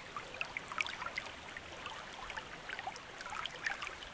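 Faint trickling water: a soft hiss dotted with many small, quick liquid plinks.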